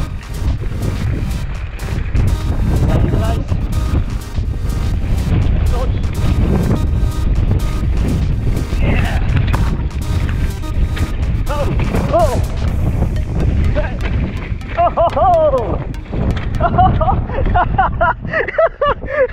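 Wind rushing over a handlebar-mounted action camera's microphone while a mountain bike rides down a rough dirt trail, with a dense run of rattles and knocks from the bike over the bumps. The rattling thins out after about two-thirds of the way, and a wavering pitched sound comes in near the end.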